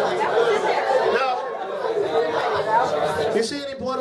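Several people talking at once in a crowded room: overlapping chatter, with one voice standing out near the end.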